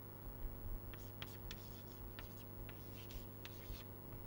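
Chalk writing on a chalkboard as an equation is written out: faint, scattered short taps and scratches of the chalk, several a second.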